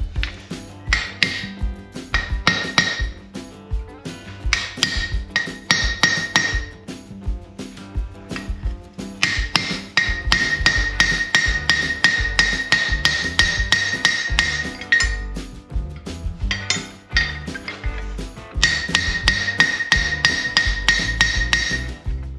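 Hand hammer striking steel blacksmith tongs on an anvil, in runs of quick blows about four a second with a ringing tone, over background music.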